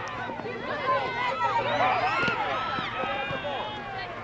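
Several voices shouting and calling over one another, the sideline spectators and players of a soccer game, with a single knock about halfway through.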